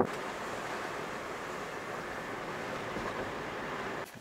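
Steady road and wind noise inside a moving Hyundai car's cabin, an even rush with no words over it.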